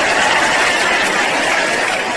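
Live audience applauding steadily, a dense even clatter of many hands, with some laughter mixed in.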